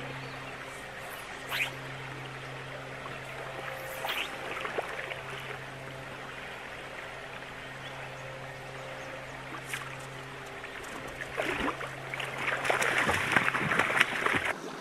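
Shallow river water flowing and trickling over stones, over a steady low hum. Near the end, splashing builds as a hooked rainbow trout thrashes at the surface.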